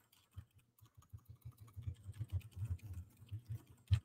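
Quick, soft keystrokes on a computer keyboard, starting about a second in.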